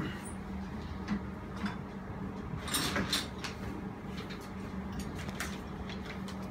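Scattered light knocks and scrapes as an outdoor split air-conditioner unit is set down and shifted into place on the metal bars of a support stand, the busiest knocks about three seconds in, over a steady low hum.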